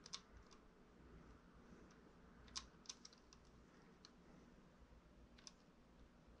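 Near silence: room tone with a low hum and several faint, sharp clicks scattered through, the clearest just at the start and two close together a little before the middle.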